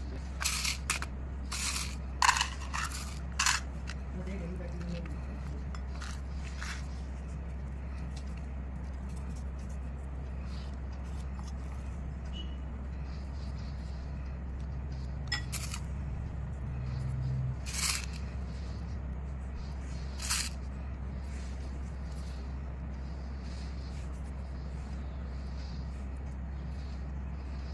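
Scattered taps and scrapes of a spoon against a paper cup and glass bowl as chocolate mixture is packed into the cup: a cluster of sharp clicks in the first few seconds, then a few more later, over a steady low hum.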